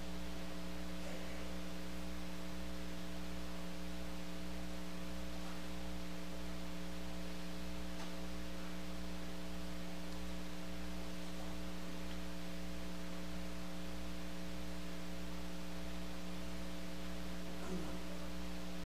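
Steady electrical mains hum: a low buzz with several fainter overtones above it, unchanging.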